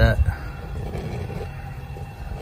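Low, uneven rumble of wind buffeting the microphone, after a spoken word at the start.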